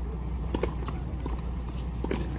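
Tennis ball being struck by rackets and bouncing on the hard court: a few sharp pops, the loudest about half a second in, over a steady low rumble.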